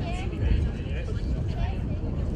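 Distant voices of players and onlookers calling out across the ground, over a heavy, uneven low rumble of wind on the microphone.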